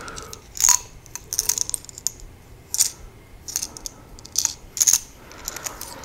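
Light metal clicks and clinks from a small aluminium pocket screwdriver and its loose bits being handled, the pieces tapping together in irregular, separate ticks.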